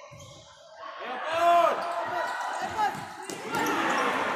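Futsal play in a large, echoing indoor hall: shouting voices and sharp ball and shoe sounds on the court, starting about a second in. The loudest moment is a shout around the middle.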